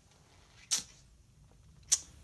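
Two brief, sharp clicks or scrapes about a second apart, from the lid of an unfired porcelain jar being handled and seated on the jar's body while its fit is checked.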